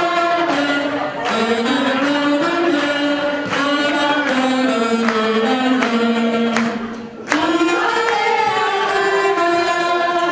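Live singing: voices carry a slow melody in long held notes, with hands clapping along. The singing drops out briefly about seven seconds in, then comes back strongly.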